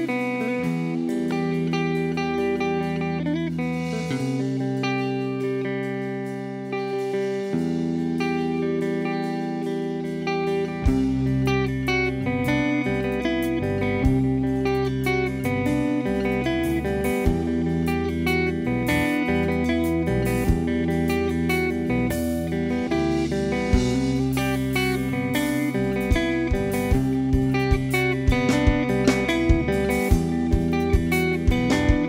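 Live instrumental rock trio on electric guitar, bass guitar and drum kit. The first third holds sustained guitar and bass notes, then the bass and drums come in fully. Drum hits grow busier near the end.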